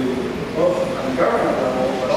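A man speaking through a lectern microphone in a large hall.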